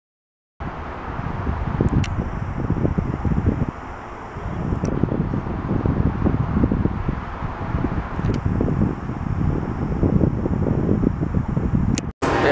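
Wind buffeting the camera microphone: an uneven, gusty rumble that starts about half a second in after a brief silence, over faint outdoor ambience, easing for a moment around four seconds in.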